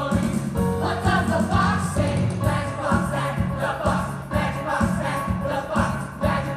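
Live band playing an upbeat dance song with a steady beat and bass line, with a group of voices singing along.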